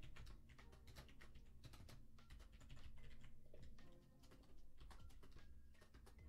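Faint computer keyboard typing: a steady run of quick keystrokes.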